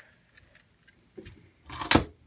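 Faint clicks, then a short, loud rustling burst near the end: handling noise from the plastic LEGO truck or the camera.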